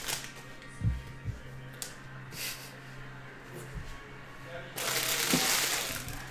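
Trading cards and foil card packs handled on a table. A few soft knocks come early on, then about five seconds in a second or so of rustling, all over a faint steady hum.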